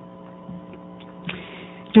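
Steady electrical mains hum from the sound or recording system, several steady tones held at once, with a couple of faint short sounds about halfway through.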